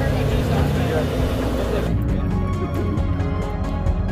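Turbocharged four-rotor Mazda rotary engine idling, heard close to its side-exit exhaust. About halfway through, the sound cuts abruptly to background music.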